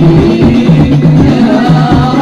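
Hadroh ensemble of hand-struck frame drums (rebana) playing a dense, steady rhythm for a sholawat.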